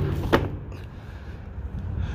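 A Lexus LS400 rear door panel being handled and laid on the ground: a sharp plastic knock about a third of a second in, then faint creaks and clicks over a low rumble.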